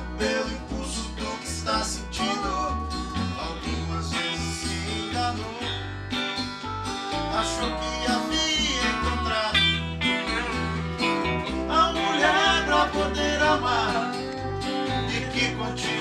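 A small band playing a country-tinged instrumental passage: electric guitar, acoustic guitar and lap steel guitar over a moving bass line, with sliding notes.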